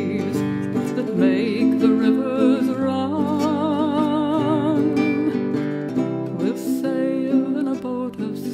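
A folk song with strummed acoustic guitar and a singing voice, including a long held note sung with vibrato in the middle.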